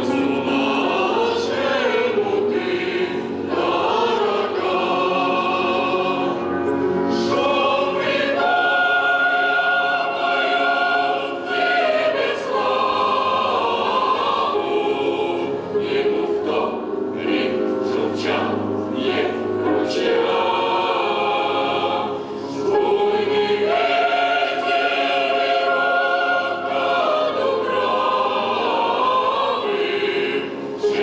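A mixed choir of men's and women's voices singing together, holding long notes that move in steps from chord to chord.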